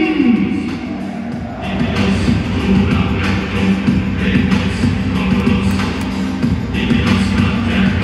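Music played over a stadium's public-address system: a held low note under a steady beat, growing fuller about two seconds in.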